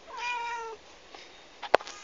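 A domestic cat meows once, a short call of about half a second near the start. About three quarters of the way through there is a single sharp click, the loudest sound.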